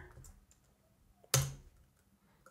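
A single sharp computer-keyboard keystroke about a second and a half in: the key press that submits the PIN at the smart-card unlock prompt.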